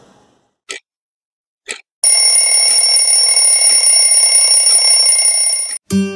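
Alarm clock sound effect: two ticks about a second apart, then a loud, steady bell ringing for nearly four seconds that cuts off suddenly. Guitar music starts right at the end.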